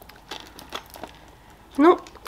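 Paper fried-pie sleeve crinkling in the hand as it is handled, a few soft, scattered crackles.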